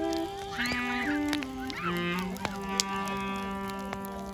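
Acoustic klezmer band with reed instruments playing a stepping melody that settles into a long low held note about halfway through. Sharp pops from a crackling bonfire sound over the music.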